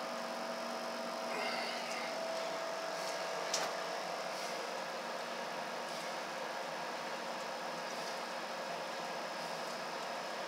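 Steady hiss with a faint hum from running bench equipment, and a thin steady tone that fades out about four seconds in. One small click comes about three and a half seconds in.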